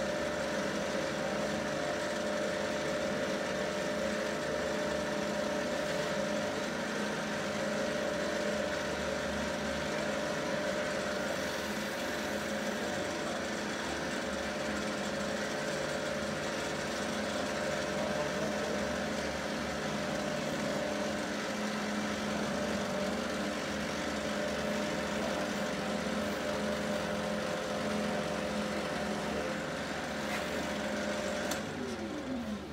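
Wood lathe running steadily with a mallet handle spinning between centres while a rag buffs wax onto it: an unbroken motor hum with a clear steady tone.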